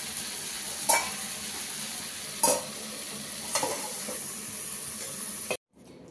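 Chopped vegetables and spices sizzling in a steel kadhai, with three short metal spatula scrapes against the pan. The sizzle cuts off suddenly near the end.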